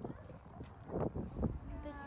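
People's voices outdoors with a few short knocks, and a woman's voice starting near the end.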